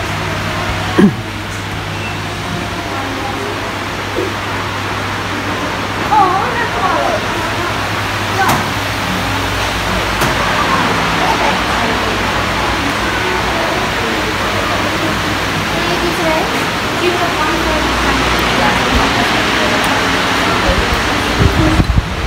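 Indistinct distant voices over a steady background hum and hiss, with one sharp knock about a second in.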